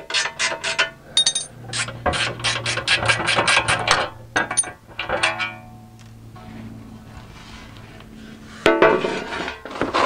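Hand socket ratchet clicking rapidly in runs, several clicks a second, as the skid plate bolts are backed out. It goes quiet to a low hum for a couple of seconds, then there is a short clatter near the end.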